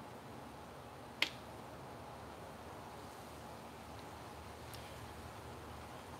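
A single sharp click about a second in, the power switch on the Electro-Voice Evolve 50M column PA being switched on, over a faint steady background hiss.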